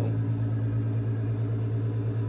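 A steady low hum with a few overtones, unchanging in level and pitch.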